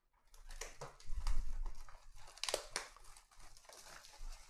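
A cardboard trading-card box being handled and opened by hand, its wrapping crinkling and tearing in a run of short crackles, with a sharper snap about two and a half seconds in.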